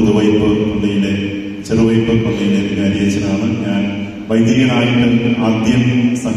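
A priest's voice chanting a liturgical prayer on a steady reciting tone, amplified through a microphone, in three long phrases with short breaks between them.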